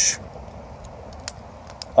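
Burning wood fire crackling faintly, with a couple of sharp pops, the plainest about a second and a quarter in and another near the end.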